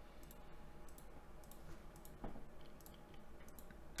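Faint, irregular light clicks, a dozen or so scattered through the pause, over a low steady hum; one slightly stronger soft sound comes a little over two seconds in.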